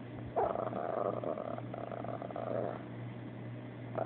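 Chihuahua 'talking': a drawn-out, complaining vocalization that starts about half a second in, runs for about two seconds, then drops away.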